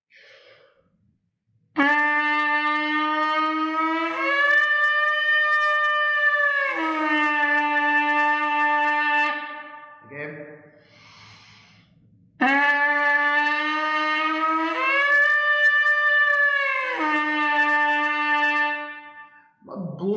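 Trumpet leadpipe buzz, blown twice with a short gap: a held buzzy tone that flicks up an octave at the harmonic click, holds, and then drops back to the starting pitch. The player is reaching the upper octave with air support, where it tends to sit a little flat.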